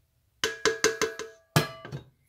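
A spatula knocking against a stainless steel mixing bowl: five quick knocks, then one more, each leaving a short metallic ring.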